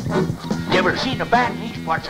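Show soundtrack: music with steady low notes under short, yelping vocal cries.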